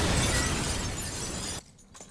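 A sudden crash sound effect from the anime's soundtrack: a loud, noisy rush that begins at once and fades out over about a second and a half.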